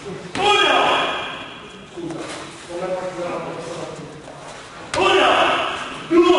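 Two kicks landing on a kickboxing pad, about half a second in and again near the end, each a sharp slap that rings on in a large gym hall. Voices carry underneath.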